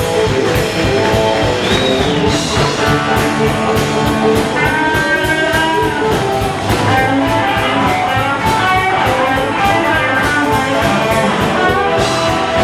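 Live blues band playing an instrumental passage: electric guitar lines over electric bass and a drum kit, with no vocals.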